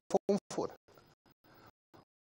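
A man speaking Mandarin in short syllables for under a second, then a pause of near silence.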